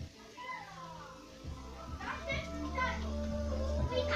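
Children's voices talking in another room, with music playing underneath from about a second and a half in.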